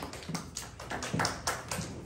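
A few sparse, irregular hand claps from the congregation.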